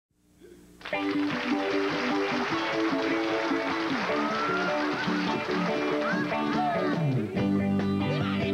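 A country band starts playing an instrumental intro about a second in, led by electric guitars with bent, sliding notes.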